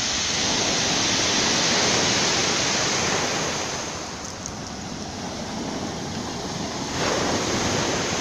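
Storm surf breaking and washing up a pebble beach as a steady, rushing roar. It eases about four seconds in and swells again near the end.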